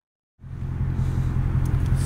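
Car engine idling, a steady low rumble that fades in about half a second in after a moment of silence.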